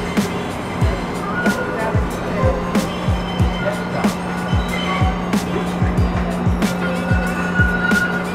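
Background music with a beat of deep kick drums and held notes above it.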